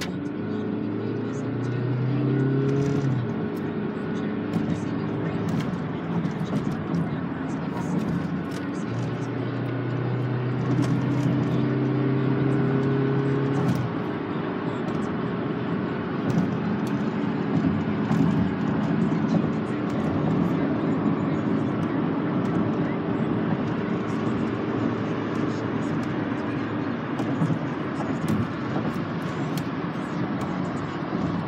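A song playing on the car radio, its notes held for seconds at a time, over steady road and engine noise inside a moving car's cabin.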